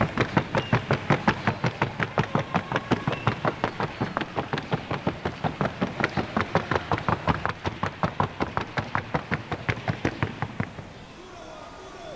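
Hooves of a Colombian paso horse striking the arena floor in the rapid, even beat of the trocha colombiana gait, about six sharp beats a second, fading and stopping near the end as the horse moves away.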